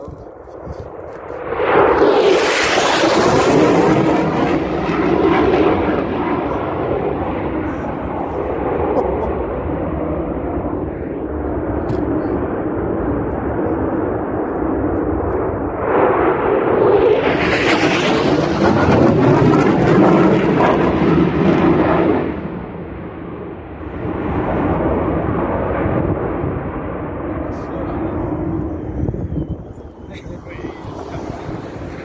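Military jet flying low overhead. The engine roar starts sharply about two seconds in, surges again around sixteen seconds, and dies down near the end.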